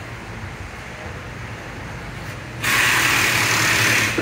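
Low steady hum of room noise, then about two and a half seconds in a loud, even hiss starts abruptly and holds steady.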